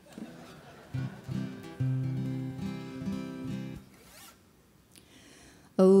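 Acoustic guitar playing a short opening run of ringing notes and chords for about three seconds, then stopping. A voice starts singing at the very end.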